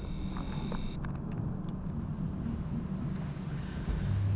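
Passenger lift car running with a steady low rumble, heard from inside the car as it arrives at the floor. A faint high hiss cuts off about a second in, and a few faint clicks come early on.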